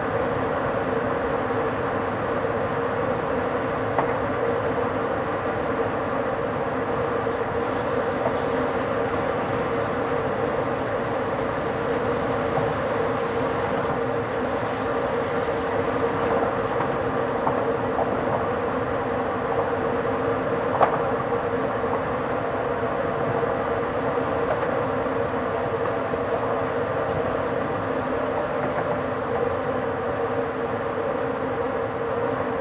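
ÖBB intercity train running on the rails as heard from the driver's cab while it slows toward a station: a steady rolling and running noise, broken by a few short sharp clicks, the loudest about 21 seconds in.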